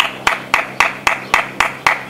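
A person clapping hands in a steady rhythm, about four claps a second, the way a visitor claps at the gate to call someone out of a house.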